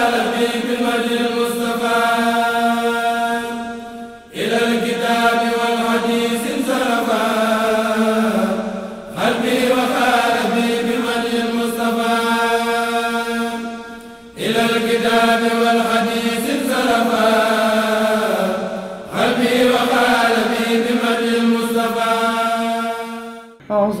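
A group of voices chanting a Mouride khassida (devotional qasida) in unison, in long sustained phrases of about five seconds each, broken by short breaths.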